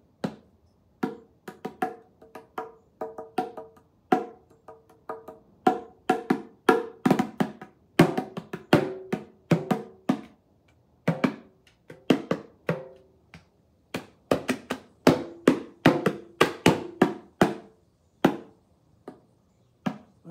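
A pair of wooden-shelled bongos played by hand: loose, irregular strikes on the two heads, each ringing briefly at its own pitch, one drum higher than the other. The playing is sparse at first, busier through the middle and thins out near the end.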